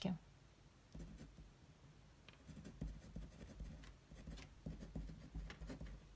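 Ballpoint pen writing on a sheet of paper over a wooden table: faint, irregular short scratching strokes with soft low knocks of hand and pen on the table, starting about a second in.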